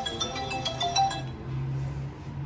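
A bright, tinkling electronic melody of quick short notes that stops about a second and a half in, with a low steady hum underneath towards the end.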